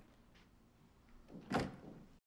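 A door shutting with a sharp knock about a second and a half in, after a fainter knock near the start.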